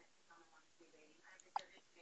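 A faint whispering voice, barely above near silence, with a single short click about one and a half seconds in.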